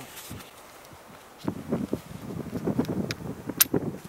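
Handling noise of a stainless Dan Wesson 715 .357 Magnum revolver being worked with gloved hands, with a few sharp metallic clicks. The loudest click comes about three and a half seconds in, after a quiet first second or so.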